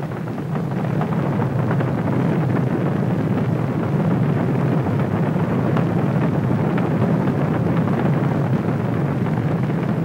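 Space Shuttle launch roar: the rocket engines and solid rocket boosters make a steady low rumble that swells slightly in the first second and then holds.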